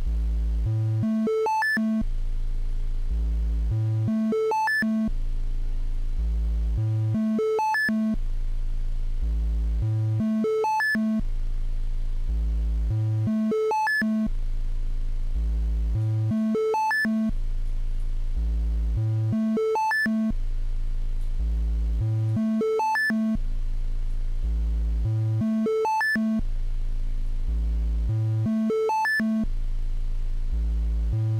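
Befaco Even VCO's triangle wave playing a repeating run of test notes an octave apart, C1 up through C6, each held briefly, with the cycle starting over about every three seconds. These are automated tuning measurements, taken while the oscillator's high-frequency tracking is being trimmed.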